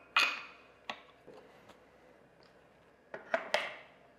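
Metal telescope mount and tripod parts clinking and knocking as they are handled and fitted together: a sharp, briefly ringing clink just after the start, a lighter knock about a second in, and two more clinks near the end.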